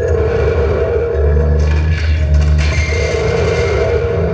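Live electronic noise music from tabletop electronics played through an amplifier: a loud low drone that grows heavier about a second in, a steady wavering midrange tone, and a stretch of hiss higher up in the middle.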